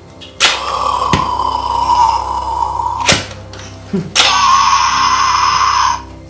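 Talking Anger toy figure playing electronic sound effects through its small speaker: two loud, noisy sounds of about two to three seconds each, with short clicks in between.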